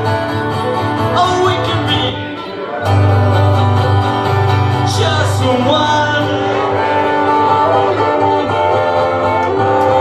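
Live acoustic guitar and fiddle playing together, the fiddle's melody sliding between notes over the guitar, with a strong low note coming in about three seconds in.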